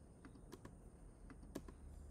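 Faint, scattered keystrokes on a computer keyboard, a few separate taps.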